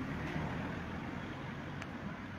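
Steady background noise of road traffic, with a low hum under it.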